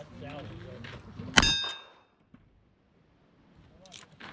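A single gunshot about a second and a half in, with the struck steel target ringing for about half a second after it. Low voices can be heard before the shot.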